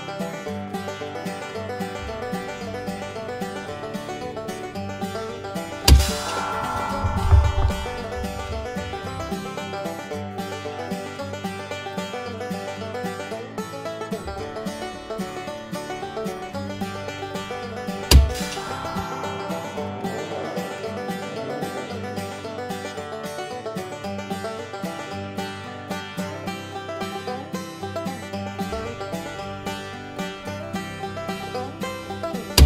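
Background music throughout, over which a Kalibr Cricket .25-calibre PCP air rifle fires twice, with sharp shots about 6 and 18 seconds in.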